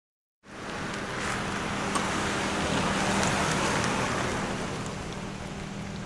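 Steady background noise like road traffic, with a faint low hum, starting about half a second in.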